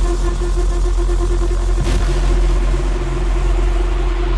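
Electronic dance music in a drumless stretch: a heavy, rumbling deep bass with a fast-pulsing synth note on top, which sounds rather like an engine.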